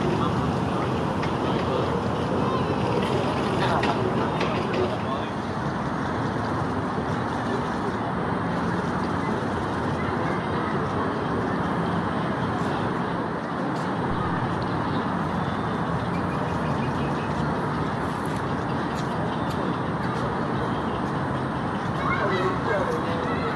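Steady outdoor background noise with indistinct voices talking at a distance.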